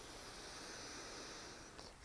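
A person's long, slow inhale, a faint steady hiss of drawn-in air that fades out shortly before the end.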